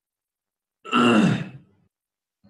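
A man clears his throat once, a short, loud rasping sound about a second in that falls in pitch.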